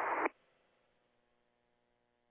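A man's voice heard through a narrow, radio-like channel stops abruptly about a third of a second in. Near silence follows, with only a faint steady hum.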